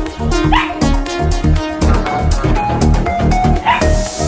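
Background music with a steady beat, over which a small Pomeranian yaps twice at its owner, about half a second in and near the end.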